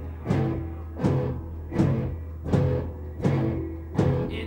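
Live noise-rock band playing a slow, heavy beat: drums and guitar hitting together about every three-quarters of a second, each hit ringing out over a steady low bass drone.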